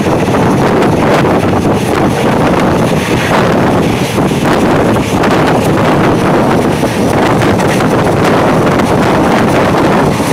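Loud, steady rush of wind over the microphone, mixed with the running noise of an Indian Railways train moving along the track, heard from a window of the train.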